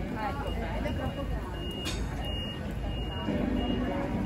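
Street ambience: indistinct voices of passers-by over a steady low traffic rumble, with one sharp click about two seconds in.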